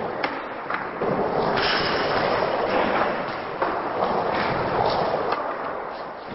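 Skateboard wheels rolling on wooden ramps with a steady rush, broken by several sharp clacks and knocks of the board.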